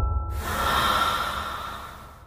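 The tail of a channel intro jingle: a low bass drone fades out while a breathy, rushing sound effect swells in about half a second in and dies away toward the end.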